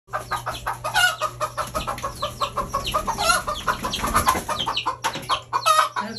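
Chickens clucking rapidly and without a break, a dense run of short calls, several a second, some falling in pitch, with a few louder squawks among them.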